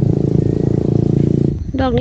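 A motor vehicle engine running close by, a steady low drone that cuts off abruptly about one and a half seconds in.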